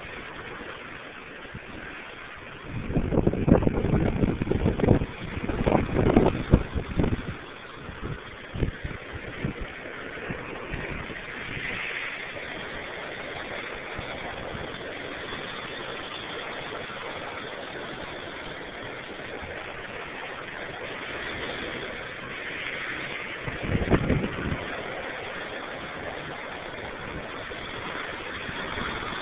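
Ocean surf washing and breaking against rocky sea cliffs below: a steady rush. Louder low rumbles come about three to seven seconds in and again around 24 seconds.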